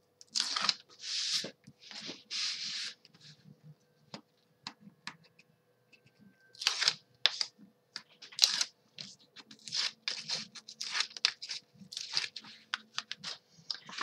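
Backing liners being peeled off strips of double-sided score tape on chipboard: a series of short, sharp peeling rips, with a pause of small clicks about a third of the way in before the rips pick up again.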